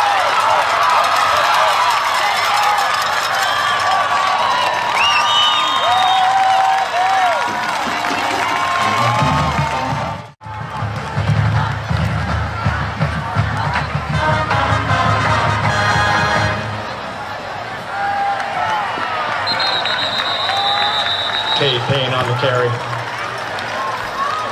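Stadium crowd cheering and yelling during a football play, with band music and drums coming in under it after a short break. A single high whistle is held for a second or so late on.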